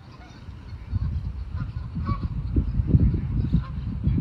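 Geese on water honking a few times. A low, uneven rumbling noise sits under them from about a second in and is the loudest part of the sound.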